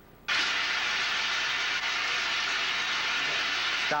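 A loud, steady rushing hiss with no pitch to it, starting abruptly about a quarter second in and cutting off just before the end.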